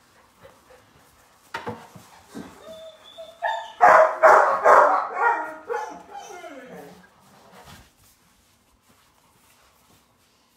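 A puppy barking and yapping in a loud burst of high, pitched calls about four to seven seconds in, the pitch sliding down at the end.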